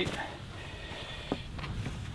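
Quiet outdoor background on the golf course: a low, steady rumble with one faint tap a little past halfway.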